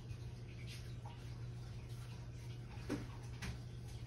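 A steady low hum with a few faint light clicks and knocks of kitchen items being moved about.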